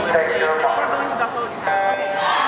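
Electronic starting beep for a swimming race: one steady, tone-like beep that sounds suddenly about one and a half seconds in, over voices.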